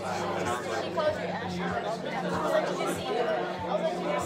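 Several people chatting at once in a hall-like room, the voices overlapping into indistinct chatter.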